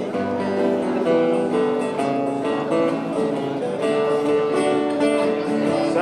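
Dance music led by strummed acoustic guitar, with a steady beat and no singing.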